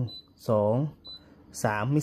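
A man counting 'one, two, three' in Thai, with two short high beeps from an Oxygen air purifier between the words as it takes remote-control presses stepping its fan speed.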